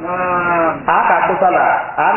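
A man's voice preaching: one long drawn-out vowel for almost a second, then quick continuing speech.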